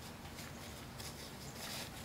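Faint rustle of a paper napkin being handled and wiped across the mouth, a little louder near the end, over quiet room tone.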